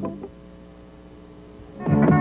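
Music fades out at the start, leaving a low, steady electrical hum for about a second and a half; music starts again near the end.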